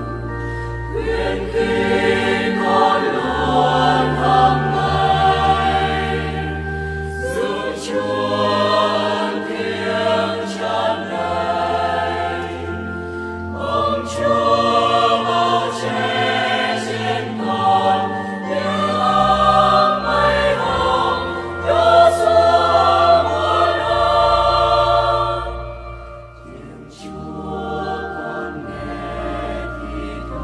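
A choir singing a Vietnamese Catholic communion hymn over sustained low accompaniment notes. Near the end the sound dips briefly between phrases.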